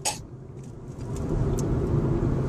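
Car engine and road hum heard from inside the cabin, a steady low drone that grows louder about a second in, with a brief click at the start.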